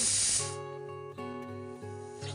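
Background music with held notes, and a short loud crinkling burst of a plastic packet being pulled open in the first half second.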